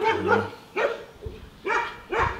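A dog barking in a few short barks, spread through the two seconds.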